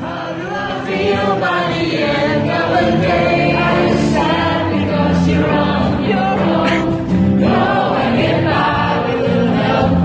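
Choir singing with music, many voices holding long notes together; it comes up in level over the first second.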